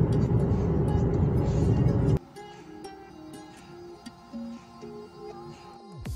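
Loud, steady car road and engine noise heard inside the cabin, cutting off suddenly about two seconds in. After that, quiet background music with a slow melody of single notes.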